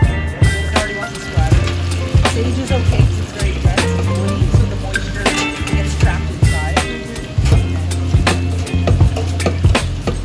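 Background music with a steady beat, over the sizzle and bubbling of fresh sage leaves deep-frying in hot oil in a commercial deep fryer.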